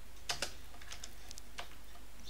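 Computer keyboard keystrokes: several separate, irregularly spaced key clicks as a short word of code is typed.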